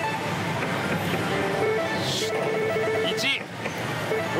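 Pachislot hall din: a dense, steady wash of many slot machines' electronic tunes and effects, with short held tones and a brief swooping electronic sound about three seconds in.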